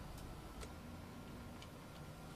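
Three faint, light ticks at uneven intervals over a low steady hum.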